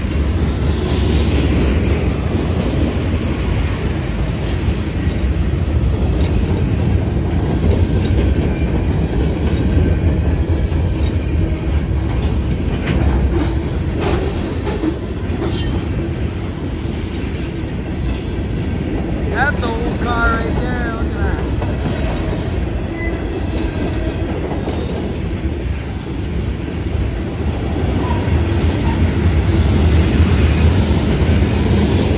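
Loaded freight train of boxcars and covered hoppers rolling past close by: a steady low rumble with the clickety-clack of wheels over rail joints. A brief wavering squeal comes about two-thirds of the way through.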